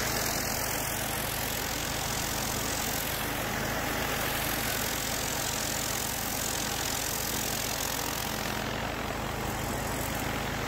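Trailer-mounted Power Line pressure washer's 18 hp engine running steadily under load, together with the hiss of high-pressure water from a spinning surface cleaner on concrete.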